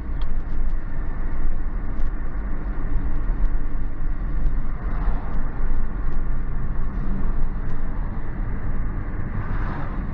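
Steady engine and road noise heard from inside a moving car's cabin, heaviest in the low end, with a few faint clicks scattered through it.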